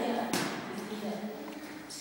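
Boxers sparring in a ring: one sharp smack about a third of a second in, over faint background voices.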